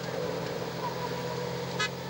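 Motor vehicles running steadily with a low hum, and a short high toot near the end.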